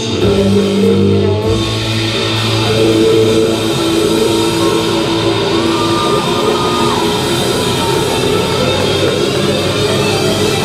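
A rock band playing loud on stage: heavily distorted electric guitar over drums. Held chords in the first second and a half give way to a dense, churning wall of noise.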